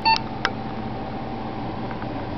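Cooling fans of a PC case running with a steady whir. A short, high electronic beep sounds right at the start, followed by a sharp click about half a second in.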